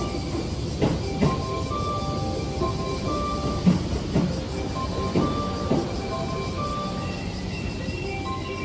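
Two-car JR 213 series electric train (La Malle de Bois) rolling slowly into the platform with a low rumble, its wheels knocking over rail joints in pairs of clunks as each bogie passes, about a second in, around four seconds and around five and a half seconds. A simple chiming melody plays over it.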